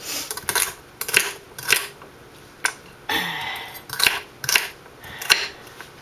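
Kitchen knife chopping celery on a wooden cutting board: sharp knocks of the blade striking the board in a slow, irregular series, about eight strikes in all.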